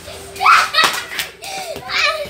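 A small ball bouncing on a hard floor, with a loud excited shout about half a second in and more voices after it.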